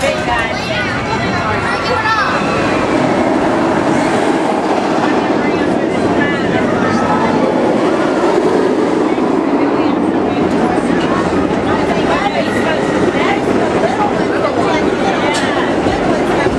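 Cedar Point & Lake Erie Railroad narrow-gauge steam train rolling steadily along its track, heard from an open-sided passenger car, with people talking all around.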